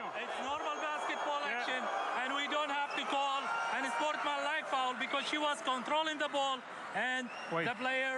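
Speech: referees talking among themselves during a video replay foul review, heard through the referees' microphone feed.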